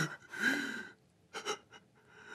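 A man crying: one long gasping sob about half a second in, then two short sobbing breaths.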